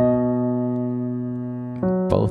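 Piano played with both hands: a chord is struck and held, fading slowly, and a new chord comes in just before the end.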